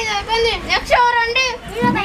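Children's high-pitched voices talking in short phrases.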